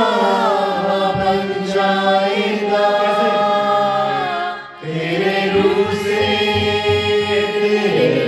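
A man singing a devotional song with harmonium accompaniment, the voice gliding and bending in pitch over the instrument's sustained notes. A brief pause comes just past halfway.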